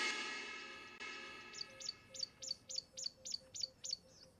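Background music fading out, then a small bird chirping: a quick run of about ten short falling chirps, about four a second.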